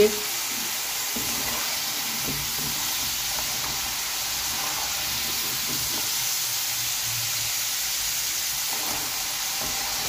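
Potato fries sizzling steadily in hot oil in a wok, turned now and then with a metal slotted spoon. The fries are still pale and are being left to fry until they take more colour.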